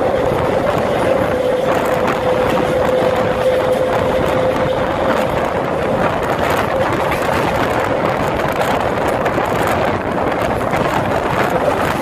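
SuperVia Series 400 electric train running at speed, heard from an open window as a steady rush of wheels on rail, with wind buffeting the microphone. A steady whine runs with it and fades out about halfway through.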